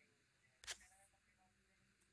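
Near silence, broken by a single faint click a little over half a second in.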